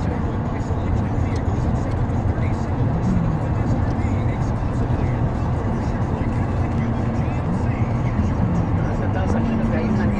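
Steady low road and engine rumble of a car driving, heard from inside the car, with a few faint, indistinct voice-like sounds over it.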